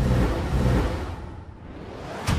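Logo-animation sound effect: a dense rumbling swell that comes in fast, is loudest in the first second, then fades, with low steady tones underneath.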